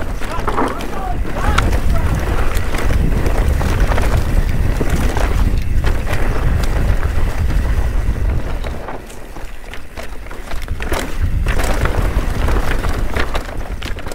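Mountain bike descending a dirt singletrack at speed: wind buffeting the microphone with a heavy rumble, tyres running over dirt, and frequent sharp clicks and rattles from the bike over bumps. The noise eases briefly around nine to ten seconds, then picks up again.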